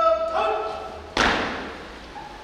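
A drill command shouted with a long, held note, followed about a second in by a single sharp thud as the honour guard's drill movement lands in unison, echoing in the large hall.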